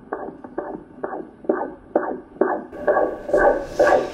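Fetal heartbeat played through a Toshiba ultrasound scanner's Doppler speaker: rhythmic whooshing pulses at about two beats a second, muffled and without any high tones.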